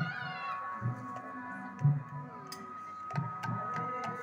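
Devotional kirtan music: barrel-shaped hand drums struck in a slow, loose beat, roughly a stroke a second, over a harmonium holding sustained notes, with a few sharp clicks in the second half.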